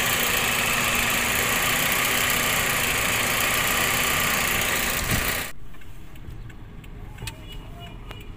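Toyota Vios engine running steadily, heard close up at the front strut tower, with no knock from the newly replaced strut mount bearing. About five and a half seconds in it cuts to the much quieter hum inside the car's cabin.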